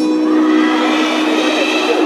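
A sustained chord held steady over a concert sound system as a live pop song begins.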